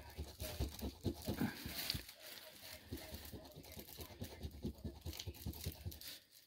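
A large metal coin scraping the coating off a scratch-off lottery ticket in quick, repeated short strokes.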